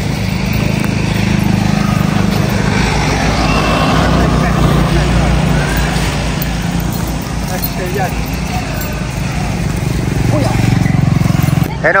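A motor vehicle engine running steadily with a low rumble, with faint voices in the background.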